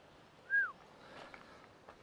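A single short bird call: one clear whistled note that rises slightly, then slides down, over faint background noise.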